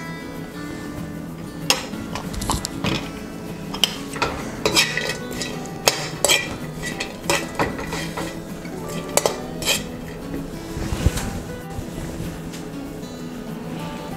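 A metal spoon clinks and scrapes irregularly against a metal wok as dried cranberries are stirred in a little butter. Soft background music plays underneath.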